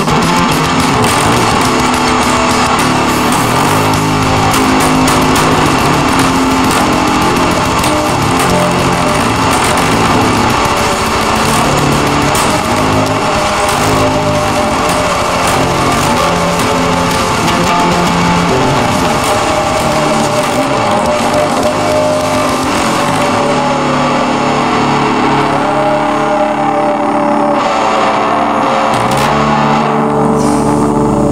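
Instrumental passage of a hard rock song: guitars over bass and drums. About three-quarters of the way through, the deep bass and cymbal sound drops away, and the full band comes back near the end.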